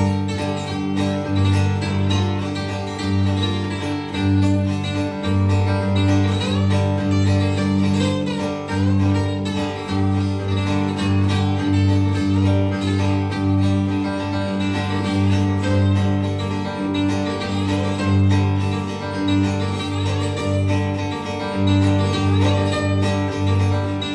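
Solo steel-string acoustic guitar, fingerpicked, with a steady pulsing bass note under a picked melody line.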